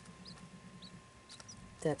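Quail chick cheeping: a few short, high, rising peeps spaced through the moment.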